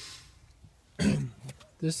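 A man clearing his throat once, a short burst about a second in, followed by the start of speech.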